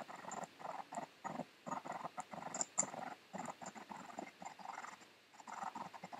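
Choppy, stuttering snippets of a video clip's own sound played through editing software as its playhead is dragged back and forth (audio scrubbing). The result is a quiet run of short, irregular bursts, several a second.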